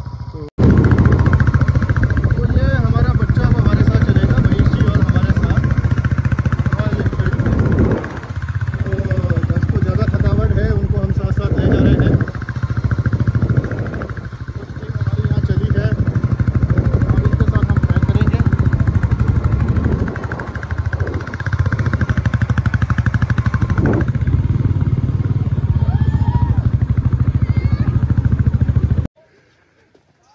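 Heavy wind rumble on the microphone while riding pillion on a moving motorcycle, with the bike's running underneath. It starts suddenly about half a second in and dips briefly a few times.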